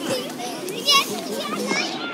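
High, playful children's voices chattering and squealing in short, wavering bursts.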